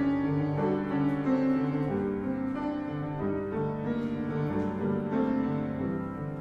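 Grand piano playing classical-style music.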